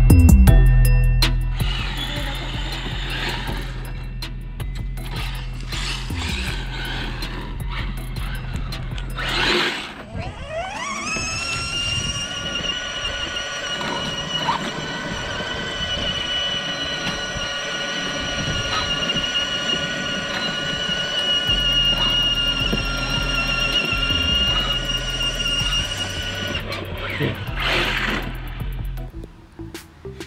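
Electric RC car motor and gear whine over background music: about ten seconds in, a high whine rises in pitch as the car speeds up, then holds steady for about fifteen seconds before dropping away.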